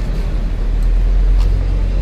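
Steady low rumble of outdoor street background noise, with a couple of faint clicks.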